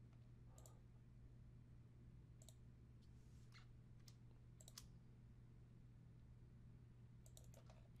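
Near silence: room tone with a steady low hum and a handful of faint, sharp computer mouse clicks spread irregularly through, placing the points of a polyline in the drawing program.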